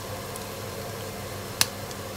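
Onions frying faintly in a pan over a steady low hum, with one sharp click near the end.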